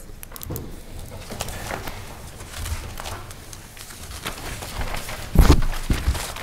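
Paper rustling and pages being leafed through close to a table microphone, with small scattered clicks and handling noises. There is one heavy, deep thump about five and a half seconds in.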